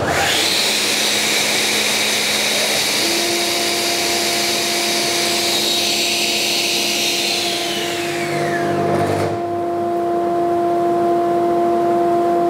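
Hammer B3 Winner combination machine's saw motor and blade starting up with a sharply rising whine and running loud at full speed. About seven seconds in, the motor brake cuts in hard and the whine falls away, the blade stopping within about two seconds.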